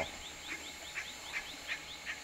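A bird other than the woodpecker calling: a series of short, sharp notes repeated about two to three times a second, over fainter, faster high chirping.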